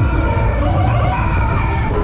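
Loud on-board sound of a Mondial Shake R5 funfair ride in motion: several wavering, siren-like tones over a heavy low rumble.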